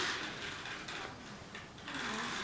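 Faint rustling of a foil face-mask sachet handled in the hand, a little louder at first and then fading.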